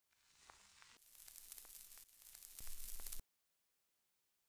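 Static hiss with scattered crackles and pops, growing louder in steps and cutting off suddenly about three seconds in.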